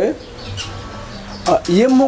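A man speaking, with a pause of about a second and a half before his voice comes back near the end.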